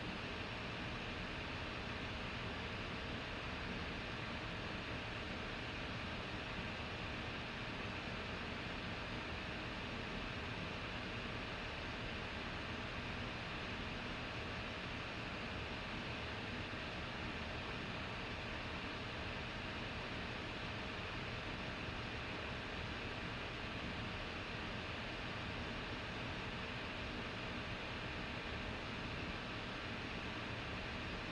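Steady, even background hiss of room tone with a faint constant hum, with no other sounds.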